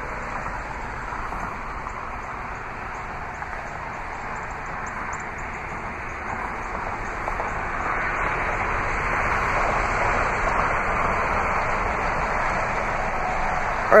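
Steady outdoor background noise, an even hiss with no distinct events, growing slightly louder about halfway through.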